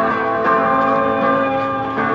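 Electric guitar played solo through an amplifier: a melodic line of sustained notes ringing into one another.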